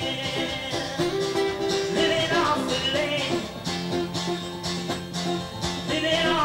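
Live country band music: a melody line over plucked string instruments, playing on without a break.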